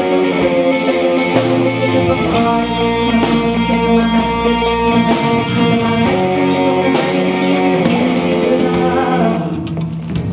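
Live rock band playing an instrumental passage: electric guitar and bass guitar over a steady drum beat with regular cymbal hits. The cymbals drop away near the end.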